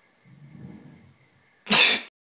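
A faint low murmur, then, near the end, a sudden loud, harsh burst of a man's voice lasting under half a second, explosive like a cough, before the sound cuts off.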